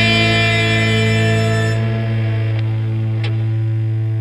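A rock band's final chord held and ringing out, electric guitars and bass sustaining one chord. Its highest notes die away about two seconds in while the low notes stay strong.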